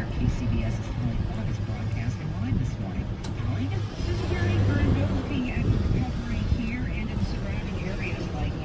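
Muffled, indistinct talk from a car radio's news broadcast over the steady low hum of a vehicle.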